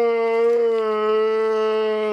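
A man's voice holding one long, loud howl at a steady pitch.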